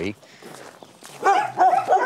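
A dog barking in high-pitched yaps, starting about a second in.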